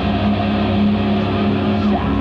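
Loud, heavily distorted electric guitars held on one sustained chord, a steady droning note, played live through the stage PA.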